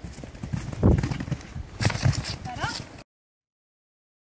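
Horses' hoofbeats on turf as they canter past, with the heaviest strikes about one and two seconds in; the sound cuts off suddenly about three seconds in.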